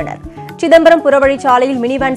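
News narration: a voice speaking in Tamil over a background music bed, with a short pause near the start.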